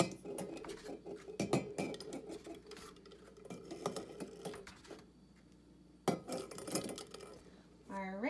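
Raw eggs set one at a time into an empty stainless-steel saucepan, knocking against the metal and against each other. The taps come thick in the first few seconds and then thin out, with one louder knock about six seconds in.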